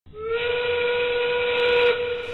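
Factory steam whistle blowing one long, steady note over a hiss, sliding up briefly as it starts.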